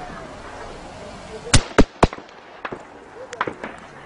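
Gunshots: three loud shots in quick succession about a second and a half in, followed by several fainter shots.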